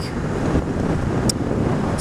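Wind and road noise rushing over a helmet-mounted microphone on a moving motorcycle, a steady rough noise with one brief tick about a second in.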